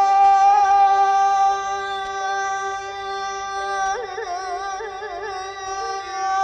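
Archival recording of Azerbaijani mugham in Chahargah: a long steady held note that breaks into quick, wavering trilled ornaments about four seconds in.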